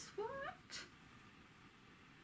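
A woman says a drawn-out "what?" that rises in pitch. Under a second in comes a single short spritz from a pump-spray bottle of room and body mist.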